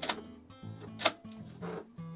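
Two sharp clicks from an 8mm camcorder's tape compartment as a cassette is loaded, one at the start and one about a second in, over quiet background music.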